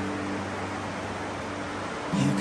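A steady rushing hiss with no breaks, under a few low held notes of background music.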